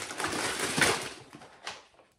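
Grocery packaging rustling and knocking as it is handled, while a cardboard multipack of dessert pots is pulled out. The noise is loudest about halfway through, with a short knock near the end.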